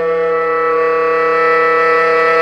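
Baritone saxophone holding one loud, steady note with a dense, bright stack of overtones.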